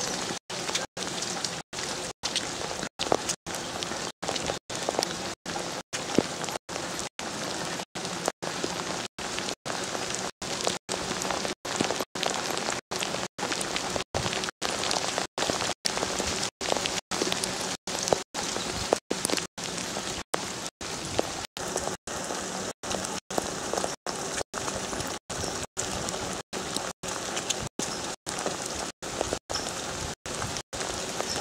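Steady rain pattering on the camera and the wet pavement, an even hiss. The sound cuts out for an instant about every 0.6 seconds.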